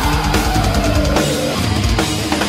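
Heavy metal band playing: distorted guitars over a drum kit, with a high note gliding steadily downward over the first second and a half.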